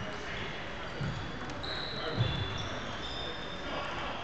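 Table tennis ball knocks in a reverberant gymnasium: two hollow knocks about a second apart, over a background of distant chatter and thin high squeaks from play at other tables.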